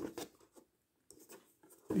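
Fingers scraping and lightly tapping a cardboard toy box as it is turned over in the hands: a few faint scrapes in the first half second.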